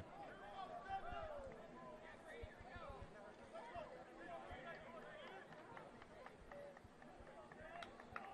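Faint, distant voices of lacrosse players calling and chattering across the field, with a few light clicks.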